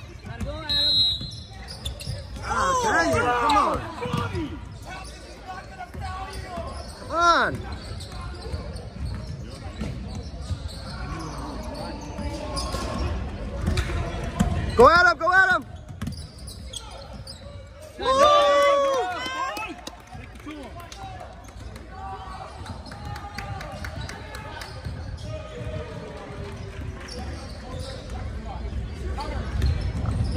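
A basketball being dribbled on a hardwood gym floor during play, with voices calling out loudly several times over it.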